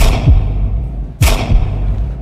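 Two heavy cinematic boom hits in trailer sound design, about a second apart. Each is a sharp crack followed by a deep rumble that falls in pitch.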